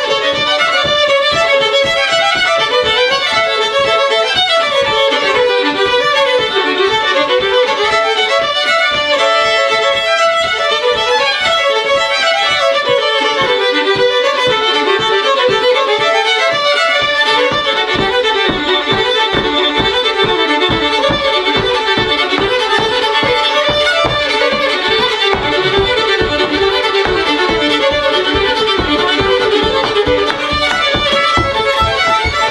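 Two fiddles playing a fast old-time fiddle tune together. From a little past halfway, a steady thumping of feet on the wooden floor keeps the beat under the fiddles.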